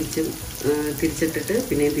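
Potato slices frying in oil in a pan, a crackling sizzle, under a prominent voice.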